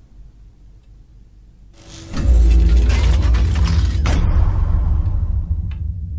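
A loud mechanical rumble and grinding with rattling clicks, like a hidden mechanism moving, starting about two seconds in and slowly dying away. It is set off by working a candle in a room where everything was locked.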